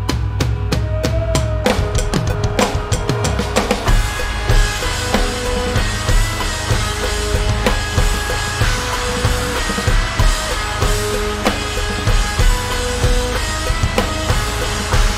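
Electronic drum kit played through its sound module: a short drum fill runs for the first four seconds or so. Then a full-band backing track comes in with held notes and the drums keep playing along.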